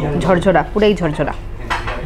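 A woman talking for about the first second, then a brief clink of crockery near the end over restaurant room noise.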